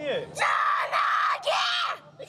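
A small, lost boy screaming and crying in distress, worked up and refusing comfort: two long, high wails.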